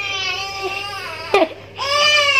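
One-month-old baby crying at a BCG vaccination in the upper arm: a long wail, a sharp catch of breath about one and a half seconds in, then a fresh, louder wail.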